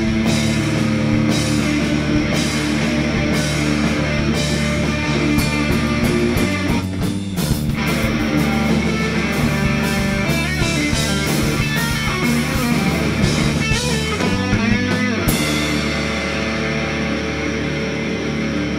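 Live rock band playing an instrumental passage: electric guitar chords over a drum kit, with bending guitar notes in the last third. About three seconds before the end the drums stop and the guitar rings on.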